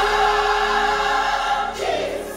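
Gospel choir holding a sustained chord, which is released near the end as a single voice slides upward into the next note.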